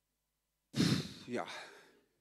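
A man sighs heavily into a handheld microphone: a breathy exhale about a second in that runs into a drawn-out, voiced "ja" and then fades.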